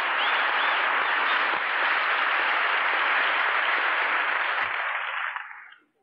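A large audience applauding: a dense, steady wash of clapping that dies away about a second before the end.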